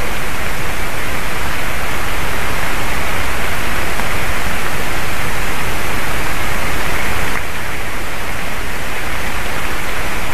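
Steady loud hiss of outdoor noise on the nest camera's microphone, easing slightly about seven and a half seconds in.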